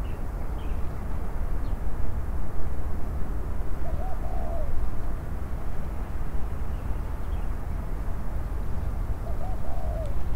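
Steady low outdoor rumble, with two faint, short wavering bird calls, one about four seconds in and one near the end.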